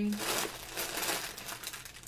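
A plastic bag holding undyed Bluefaced Leicester wool top crinkling and rustling as it is picked up and handled.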